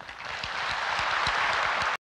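Audience applauding, swelling within the first half second into full applause that cuts off abruptly near the end.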